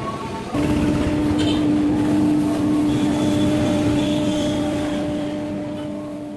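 Wood-carving CNC router workshop running, with dust extraction clearing sawdust off the carved door: a loud, steady machine hum with one held tone that steps up abruptly about half a second in.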